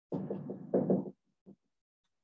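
Dry-erase marker knocking and rubbing against a whiteboard while writing: a rapid run of knocks lasting about a second, then one faint tap.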